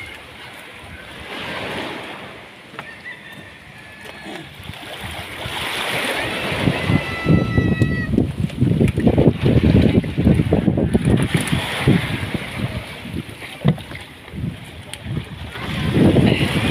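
Wind buffeting the microphone over sea water lapping around a small outrigger boat. It is light at first and grows into louder, rumbling gusts about six seconds in.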